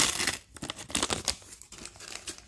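Crinkling and tearing of a small collectible blind-bag packet's wrapper as it is pulled open by hand: a louder rip at the start, then a run of irregular small crackles.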